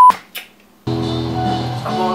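A loud, steady high beep cuts off right at the start, followed by a click and a brief quiet gap. About a second in, band music starts abruptly: electric bass and electric guitar playing together.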